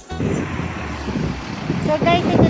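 Steady rushing background noise with no clear engine tone, following a sudden stop of music right at the start; a woman's voice begins just before the end.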